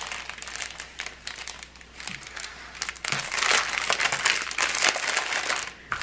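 Clear plastic bag of diamond painting drills crinkling as it is handled, louder from about halfway through.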